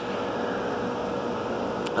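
Steady noise of cooling fans from the digital cinema projector and rack equipment in a projection booth, with a faint steady tone in it. A faint click comes near the end.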